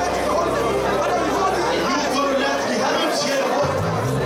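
A congregation worshipping aloud all at once, many voices overlapping in an indoor hall, over sustained low music notes that change to a new chord near the end.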